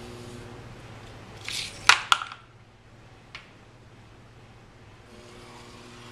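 A short rustle, then two sharp clicks in quick succession about two seconds in and a fainter click a little later, over a steady low hum: handling noise as the freshly thrown bowl on its bat is taken off the wheel to be set aside.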